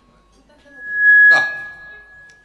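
Microphone feedback from the PA system: a single high-pitched tone that swells quickly to a loud squeal, then fades but keeps ringing. A brief loud spoken "da" hits the microphone just after the peak.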